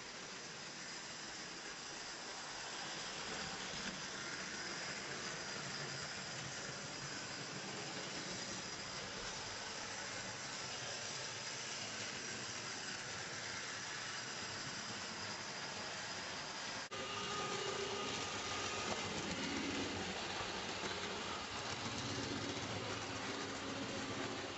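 Tri-ang Hornby model trains running on the layout's track: a steady rolling rumble of wheels on the rails. About two-thirds in the sound cuts and comes back louder, with a steady electric-motor whine.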